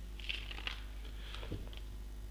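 Quiet pause: a steady low electrical hum with a few faint soft clicks and ticks, one slightly louder click about one and a half seconds in.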